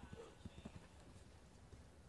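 Faint hoofbeats of a cantering horse on dirt arena footing: a few dull thuds in the first second, then they fade out.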